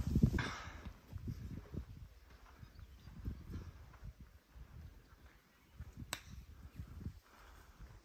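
Faint outdoor ambience on a golf course: irregular low rumbling, with a single sharp click about six seconds in.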